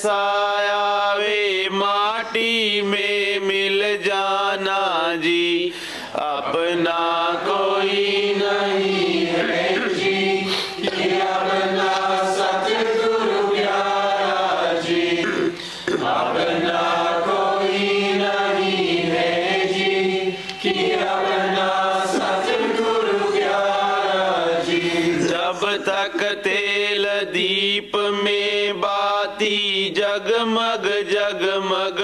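Slow devotional chanting of a hymn, the voice holding long notes and gliding between them, over a steady low drone.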